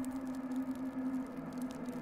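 Quiet ambient background music: a single low drone note held steadily.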